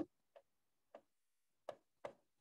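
Near silence with three faint, short clicks at uneven intervals.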